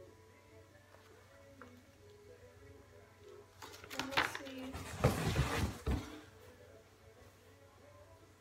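Packaging being handled: paper rustling and light clicks, then a louder burst of rustling with low knocks about five seconds in as a woven bike basket and its paper contents are moved.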